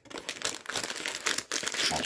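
Wrapped trading-card packs crinkling and rustling against one another and the cardboard as they are slid out of an opened blaster box, in a close, irregular run of small crackles.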